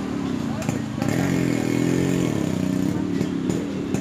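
People talking in an open street, with a motor vehicle engine running past for a second or so, about a second in.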